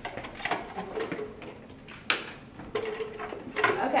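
A few small clicks and knocks as a microscope's power plug is pushed into a lab-bench outlet, with one sharp click about two seconds in. This is the little click heard as the microscope went in, when the other microscopes on the circuit cut out.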